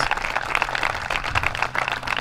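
Audience applauding: many hands clapping at an even level.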